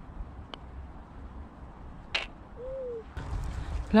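Wind rumbling on the microphone, with a light tap about half a second in, like a putter striking a golf ball. A sharper short clatter follows about two seconds in, then a single short, low bird call near three seconds.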